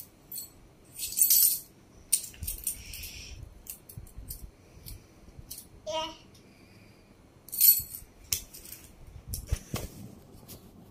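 A small jingling metal object shaken and clinked by a toddler in several short bursts, with metallic ringing. There is a brief child's vocal sound about six seconds in.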